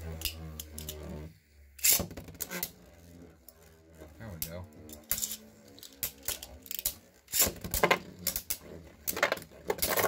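Beyblade spinning tops whirring in a plastic stadium, with repeated sharp clicks and clacks as they strike each other and the stadium wall. The clashes are loudest about two seconds in and come thick and fast from about seven seconds on.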